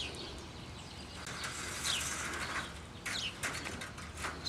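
Small birds chirping: a few short, high chirps that slide downward, heard several times. Underneath, faint rustling and a few light clicks come from thin tie wire being woven through chicken wire by hand.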